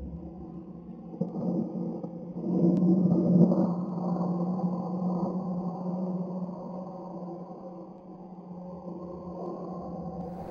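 Low, sustained ambient drone of a horror film score, swelling about two and a half seconds in and slowly easing off, with a faint high tone held above it.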